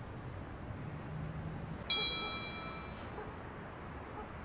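A smartphone text-message alert: one bright bell-like ding about two seconds in that rings out for about a second.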